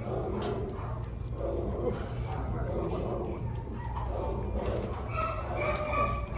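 Shelter dogs in kennel runs barking, over a steady low hum.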